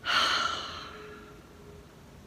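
A woman's audible sigh, a loud breath out at the start that fades away over about a second.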